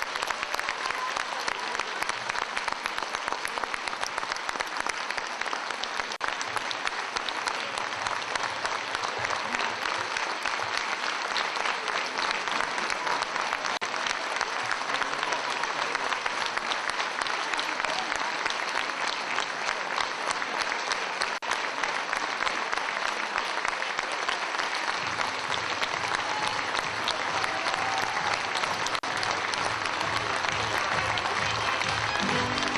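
Audience applauding: a large crowd's dense, steady clapping.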